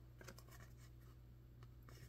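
Near silence: faint scratchy rustling of tarot cards being handled and slid out of a deck, over a low steady room hum.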